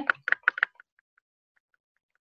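Computer mouse clicked repeatedly, a run of short ticks about three or four a second, the first few louder and the rest faint.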